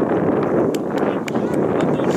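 Wind buffeting an outdoor camera microphone, a steady low rumble, with a few sharp clicks and players' calls faint underneath.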